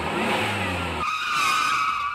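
Vehicle engine sound effect revving with a low rumble. About a second in, the rumble cuts out and a high, steady squeal like skidding tyres takes over, fading away at the end.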